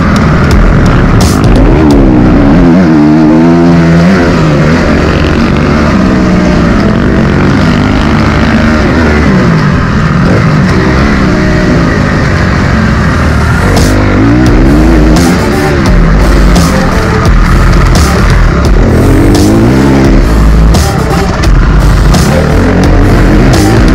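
Honda CRF250 dirt bike's single-cylinder four-stroke engine revving hard, its pitch climbing and falling back over and over as the bike is ridden on the track, with loud background music over it.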